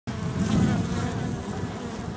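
Dense, continuous buzzing of many honey bees at the entrance of a wild colony nesting in a tree hollow, close to the microphone, the many wing-beat tones wavering and overlapping, loudest about half a second in.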